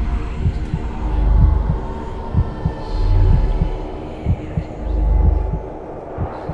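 Dark ambient horror score: a deep, slow throbbing pulse that swells about every two seconds under a sustained droning chord, with scattered soft low knocks.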